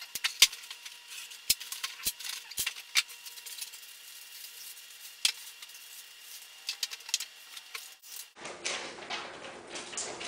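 Sped-up sound of parts being unpacked by hand: quick clicks, taps and crinkling of plastic wrapping as foam floats and small hardware are handled, high-pitched and thin from the fast-forward. The sharpest click comes about half a second in. Normal-speed room sound returns near the end.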